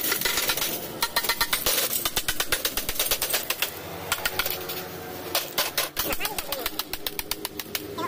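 Rapid, irregular clattering and clinking of broken picture-tube TV glass and plastic shards being stirred and rummaged with a stick inside a woven plastic sack.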